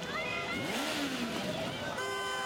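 A motor vehicle engine revving up and falling back in street traffic, amid the shouting and din of celebrating fans.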